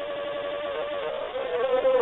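A buzzing tone held at one steady pitch and slowly growing louder, wavering slightly near the end.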